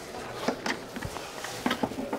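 Handling noise: a few light clicks and taps and one soft low thump about a second in, as rubber-gloved hands handle test equipment at the meter board.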